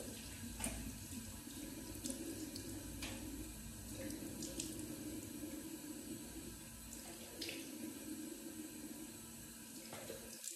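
Water running from a tap into a bathroom sink while a face is rinsed with water, with a few sharp splashes along the way.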